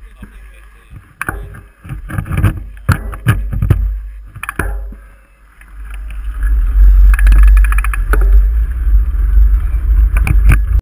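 Mountain bike rattling and knocking as it sets off, heard through a handlebar-mounted camera, with a run of sharp clicks over the first few seconds. From about six seconds in, loud wind buffeting on the microphone as the bike moves off and picks up speed.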